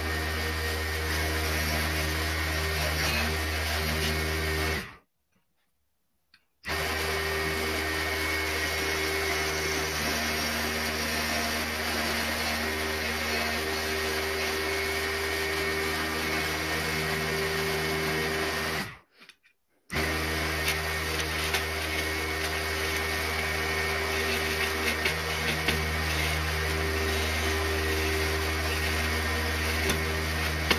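Mini benchtop wood lathe motor running steadily while a chisel cuts the spinning wooden blank. The sound cuts out completely twice, for about a second and a half around 5 seconds in and for about a second near the 19-second mark.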